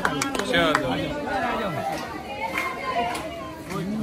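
Several people talking at once, indistinct overlapping chatter, with a few sharp clicks in the first second.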